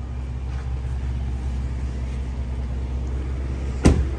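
Lincoln Navigator's 3.5 L twin-turbo EcoBoost V6 idling, heard as a low steady rumble inside the cabin, with one sharp thump shortly before the end.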